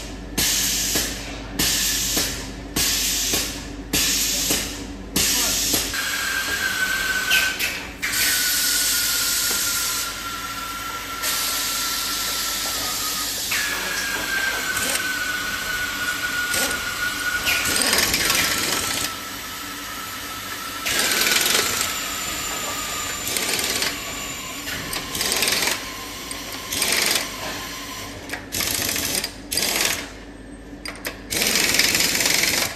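Compressed-air equipment on a PVC ball moulding line. It gives short hissing bursts about every 0.7 s at first, then longer stretches of air hiss with a whine that slowly falls in pitch, stopping and starting again several times.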